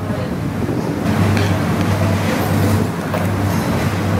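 Steady background din of an open-fronted street restaurant with a low hum, and a couple of light clicks of a metal spoon and fork against a plate as food is eaten.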